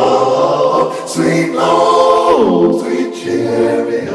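Choir-like voices from a Roland VP-550 vocal keyboard, played from the keys: two long held chords, the second sliding down in pitch about two and a half seconds in.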